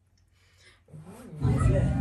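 About a second of near silence, then a faint voice. From about a second and a half in, a person's voice comes in over a loud low rumble.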